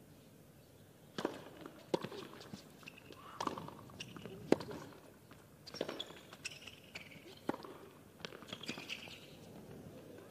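Tennis rally on a hard court: a string of sharp racket strikes and ball bounces, roughly one a second.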